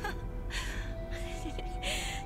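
Soft dramatic film score with steady held tones, under short breathy gasps, one about half a second in and another near the end.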